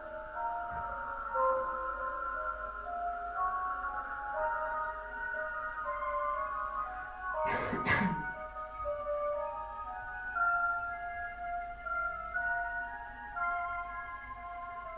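Music box playing a slow melody of single notes. About halfway through, a brief burst of noise cuts across it.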